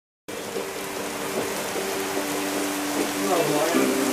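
Heavy thunderstorm rain falling, an even steady hiss heard through an open balcony door, with a faint steady hum beneath it. A short voice comes in near the end.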